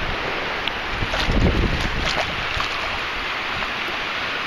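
Wind buffeting the microphone over shallow water, in gusts that come hardest about one to two seconds in.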